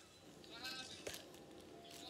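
A short, faint vocal sound from a person's voice about half a second in, otherwise near quiet.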